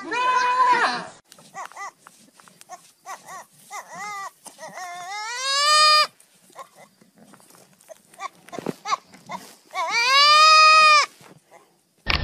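Goats bleating. An adult goat gives one loud bleat, then a young goat calls in a string of short bleats. Two long, loud bleats rise and then hold, one near the middle and one near the end.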